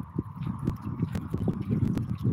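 Small sea waves washing against shoreline rocks under a low rumble, with a few short, irregular knocks.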